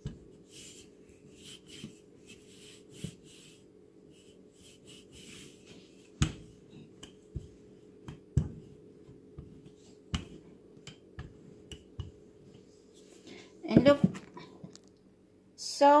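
Wooden rolling pin rolling pie dough on a floured countertop: soft swishing strokes with a few sharp knocks, over a steady low hum. A brief voice sounds near the end.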